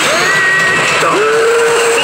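Pachislot machine's electronic sound effects and music playing loudly, with gliding tones and a pitch that rises sharply about a second in and then holds as one long steady note.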